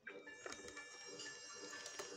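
Faint television audio: quiet music with a few steady high tones and light clicks, after the sound cuts out for a moment at the start.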